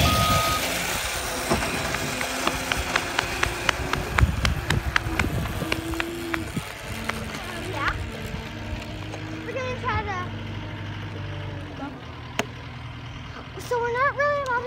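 Road-work machinery: a reversing alarm beeps steadily at the start, then a heavy vehicle's engine runs with shifting pitch, with scattered clicks and knocks.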